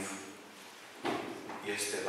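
A man's voice preaching through a microphone: a brief pause in the first half, then speech resumes about halfway through.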